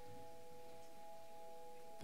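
A faint sustained chord from the band's keyboard: three steady notes held without change.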